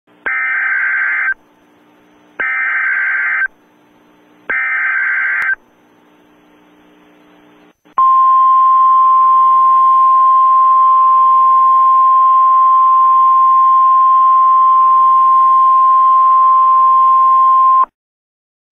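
NOAA Weather Radio emergency alert signal: three one-second bursts of SAME digital header data, about a second apart, with faint radio hiss between them. Then a loud, steady 1050-hertz Weather Radio alert tone is held for about ten seconds. It marks the start of a severe thunderstorm warning broadcast.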